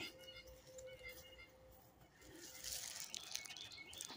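Faint woodland ambience with distant birds chirping, and a faint steady tone through the first half.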